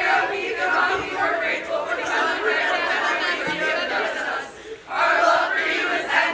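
A large group of young voices performing a team song together in unison, in long phrases with a short pause for breath about five seconds in.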